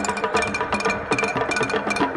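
Traditional Cameroonian percussion music: a fast, even rhythm of sharp strokes, about four a second, over a few steady held tones.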